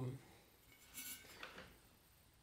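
Faint handling of a metal turntable platter in the hands: soft scraping sounds about a second in, otherwise quiet.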